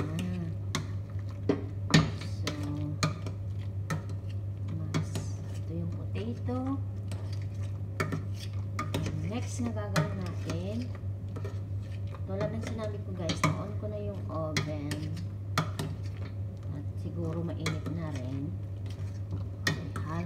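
Metal potato masher knocking and scraping against a stainless steel pot while mashing boiled potatoes, in irregular strokes, the loudest knock about two seconds in.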